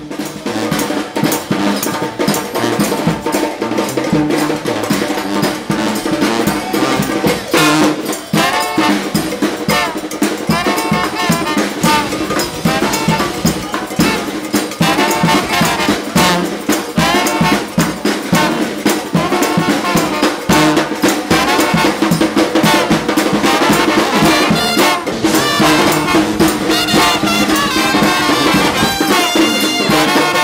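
Intro music with brass instruments carrying the melody over percussion, playing continuously.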